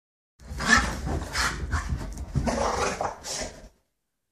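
Dogs growling in a series of rough bursts, typical of dogs play-fighting.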